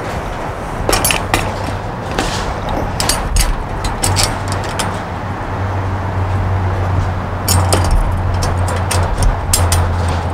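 Metal clicks and clanks from a tire-sealant canister and its fittings being turned and handled on a wheeled stand. Under them runs a low steady hum that grows stronger about four seconds in.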